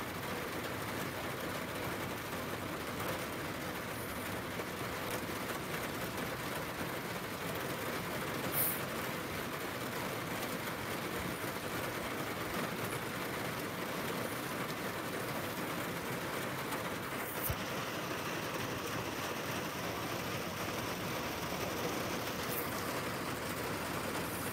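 Steady rushing of heavy rain, even and unbroken, with a faint click twice.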